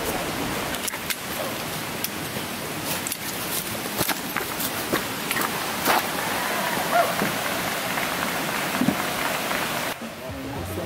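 Water running steadily over rocks in a small trail stream, a continuous rushing hiss, with scattered light clicks and knocks through it.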